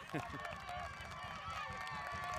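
Faint, distant shouting and cheering of several young players and sideline spectators celebrating a goal, many voices overlapping.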